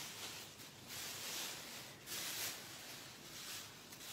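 Thin plastic trash bag liners rustling and crinkling as they are handled, in several uneven stretches of a second or so each.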